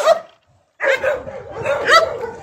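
Dogs barking repeatedly and defensively as a person approaches. The barking breaks off for about half a second early on, then carries on.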